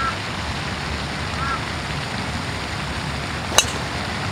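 A golf club strikes a teed-up golf ball on a tee shot: one sharp crack about three and a half seconds in, over a steady hiss.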